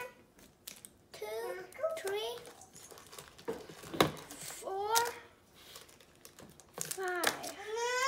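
A child's wordless vocal sounds, three or four short bursts, between the crinkle of foil-wrapped mini KitKat bars being taken from a glass jar and set on a countertop; a sharp click about halfway through.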